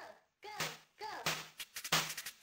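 Live electronic music starting up: short tones that arch up and down in pitch, then about halfway through a drum-machine beat with deep bass kicks comes in.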